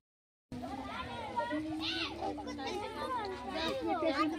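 Indistinct talk and chatter of several women and children, overlapping, after a sudden half-second of total silence at the very start.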